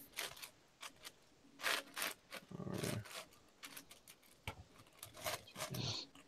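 Plastic clicks and clacks of a Moyu 15x15 cube's layers being turned by hand, coming in irregular bursts.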